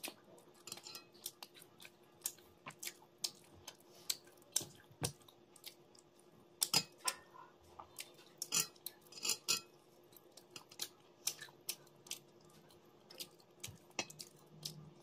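Close-up mouth sounds of eating rice and curry by hand: a string of short wet chewing clicks and lip smacks, loudest in clusters about seven and nine seconds in, with fingers squishing rice on the plate. A faint steady hum runs underneath.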